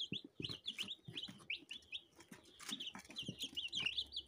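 A brood of young chicks peeping continuously: many short, high cheeps overlapping, with scattered light taps.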